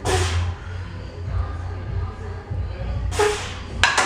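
A bench-presser's sharp, forceful breaths with the reps: one at the start and two close together near the end, over background music with a steady low bass.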